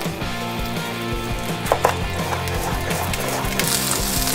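Background music, with a couple of sharp knocks just under two seconds in from a chef's knife striking a wooden cutting board while an onion is cut. A frying hiss comes in near the end.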